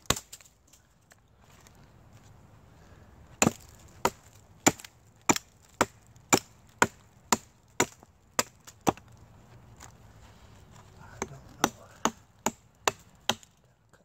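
A hatchet chopping into a rotted pine log to free a fatwood knot. A run of about a dozen sharp wood chops comes at roughly two a second, then a short pause, then about half a dozen more.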